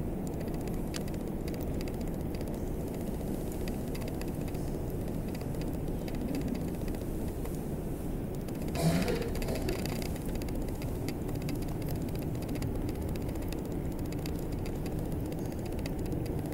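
Steady low background rumble with scattered faint clicks, and a brief louder sound with a short rising pitch about nine seconds in.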